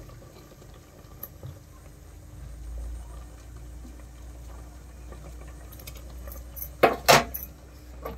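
Amaranth leaves and chillies boiling in an aluminium pot on a gas burner. The flame makes a steady low rumble, and two sharp metallic clinks come close together near the end.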